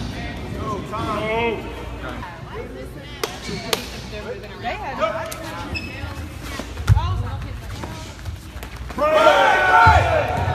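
Voices calling and shouting in a gymnasium during a sparring bout, with a few sharp smacks and thuds, the heaviest about seven seconds in. The shouting gets louder near the end.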